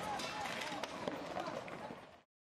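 Faint outdoor street sound with distant voices calling out and several short, sharp knocks.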